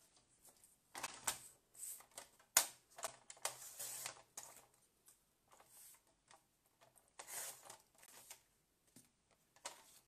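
Paper trimmer and paper being handled on a tabletop: scattered light clicks and knocks, the loudest about two and a half seconds in, and a short rustle of paper a little past halfway.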